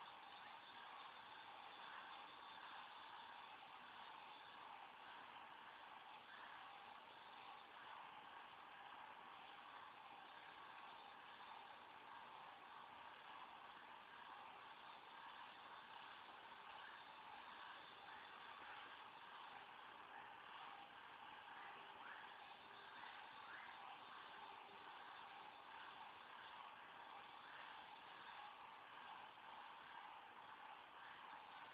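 Near silence: a faint, steady hiss of recording noise.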